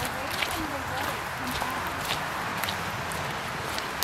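Footsteps on a dirt forest trail while walking, short scuffs of shoes on the path every half second or so over a steady outdoor hiss.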